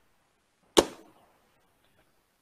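A single short, sharp knock, with near silence around it.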